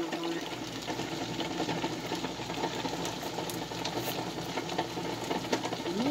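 A vegetable stew simmering in a wok, heard over a steady low hum, with a few faint ticks.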